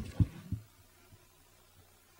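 Two dull low thumps in the first half-second, then near silence.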